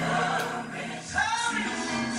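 Recorded gospel song with choir voices singing over a sustained bass line, and one held, wavering sung note a little after the first second.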